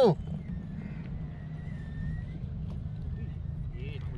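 Steady low wind rumble on the camera microphone out on open water, with a faint distant voice now and then.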